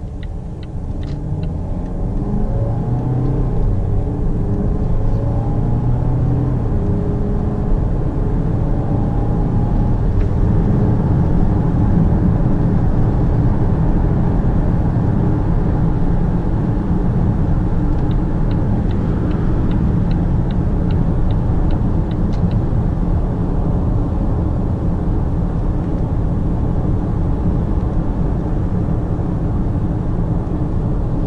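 Volvo XC90 D5's four-cylinder twin-turbo diesel heard from inside the cabin, rising in pitch in steps as the car accelerates over the first ten seconds or so, then giving way to a steady rumble of tyre and wind noise at highway speed. The turn-signal indicator ticks about three times a second at the very start and again for a few seconds past the middle.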